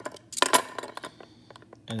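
Metal pieces of a Hanayama Vortex puzzle clinking as they are lifted and shifted by hand. A quick cluster of sharp clinks comes about half a second in, followed by a few faint ticks.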